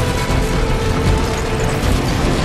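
Loud, dense movie sound mix of a city being destroyed: a continuous low rumble and clattering, grinding debris noise, with music underneath.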